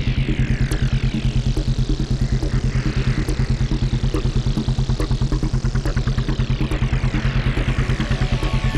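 Electronic synthesizer music: a fast, pulsing low bass sequence under a filter sweep that slowly brightens and then darkens again, with repeated falling high-pitched sweeps on top.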